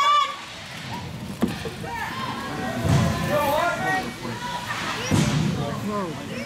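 Spectators shouting and calling out in an echoing ice rink, with one sharp knock about one and a half seconds in.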